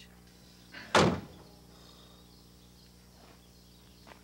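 A single sharp bang about a second in that dies away quickly, over a faint steady low hum.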